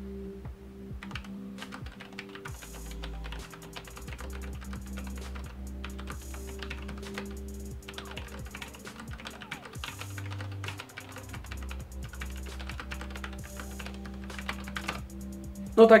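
Fast typing on a Sharkoon PureWriter RGB low-profile mechanical keyboard with Kailh Red linear switches: a rapid, irregular run of soft keystrokes, very discreet and quiet.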